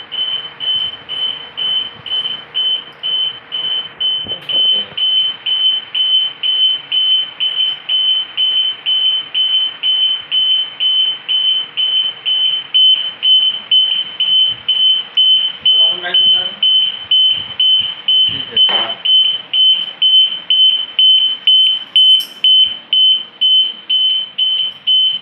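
UPS battery alarm beeping steadily, about two high-pitched beeps a second: the mains supply to it is off and it is running on battery.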